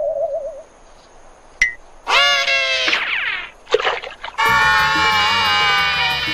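Cartoon sound effects: a wobbling boing tone fades out just after the start, then a click and a few short gliding, pitched effects. About four and a half seconds in, bright music with sustained chords begins.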